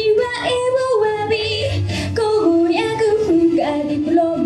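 A teenage girl singing a solo pop song into a handheld microphone over a backing track, holding notes and stepping between pitches.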